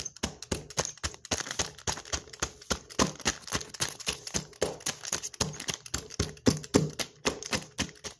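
Persimmons being squashed by hand inside a plastic zip-top bag: rapid, irregular crackling and clicking of the plastic as it is pressed and kneaded.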